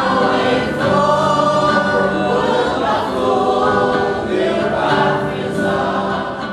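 A choir singing in harmony, several voices holding long notes together.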